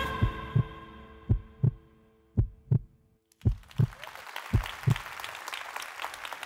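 Heartbeat sound effect: five double thumps, lub-dub, about one a second, under the held notes of synth music that fade out about halfway through. Faint room hiss comes up in the second half.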